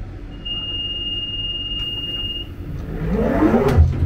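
London Underground Central line train's door-closing warning: one steady high beep lasting about two seconds, then the doors sliding shut with a sharp knock near the end, over the rumble of the train.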